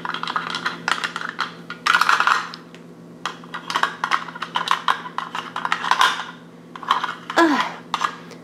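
Small hard plastic toys and a plastic toy dog house handled on a stone countertop: many quick clicks and taps, with a couple of short scraping or rubbing bursts as the little house is pushed and scrubbed.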